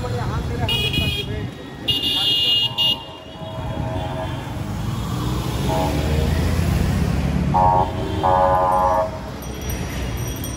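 Busy street traffic with several vehicle horns honking: a short high-pitched toot about a second in, a louder, longer one about two seconds in, and two lower-pitched blasts near the end, over passing voices and engine noise.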